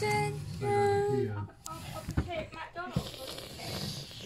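A high-pitched voice in sing-song talk with sliding pitch, the words not clear, then a soft hiss near the end.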